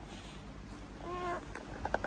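A toddler's brief high-pitched whine about a second in, then a few light knocks near the end.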